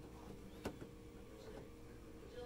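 Chicken eggs being handled in a plastic incubator egg tray: one sharp light click a little over half a second in as an egg meets the tray, then a couple of fainter touches, over a faint steady hum.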